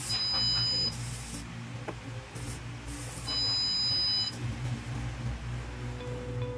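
Arduino Sensor Kit buzzer giving two steady high-pitched beeps, each about a second long, the second about three seconds after the first. The code switches it on each time the potentiometer turns the servo to its 180-degree end.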